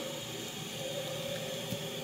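Steady low hiss of room background noise, with no distinct sound from the bulb syringe.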